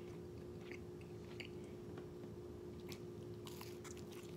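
Faint crisp crackles from a toasted ham and cheese quesadilla being handled and bitten, with a bite near the end and soft chewing sounds.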